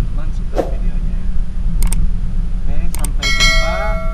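Low steady rumble of a car cabin on the move under faint voices. Sharp clicks come about two seconds in and again near three seconds, followed by a bright ringing chime: the click-and-bell sound effect of an on-screen subscribe button animation.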